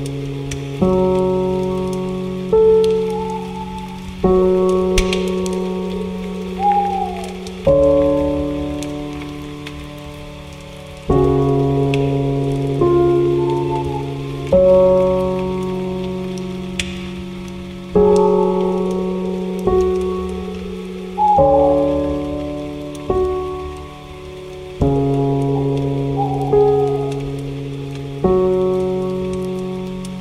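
Slow, soft piano music: a new chord struck about every three and a half seconds, each note fading away, over a steady soft rain-like hiss, with short bird chirps now and then between the chords.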